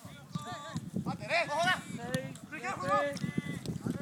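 Men shouting and calling out across an outdoor football training pitch, raised voices coming in short bursts throughout, over a steady run of short low thuds.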